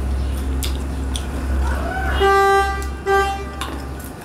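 A vehicle horn honks twice, each honk about half a second long and on one steady pitch, a little under a second apart. Under it run a steady low hum and small clicks of hands eating from metal plates.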